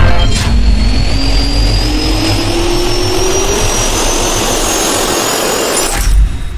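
Jet engine spool-up sound effect: a turbine whine rising steadily in pitch over a loud rushing of air, cutting off suddenly near the end.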